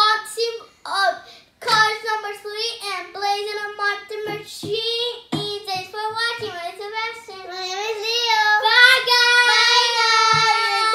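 A young child singing a melody without accompaniment, getting louder and ending on a long held note in the last couple of seconds.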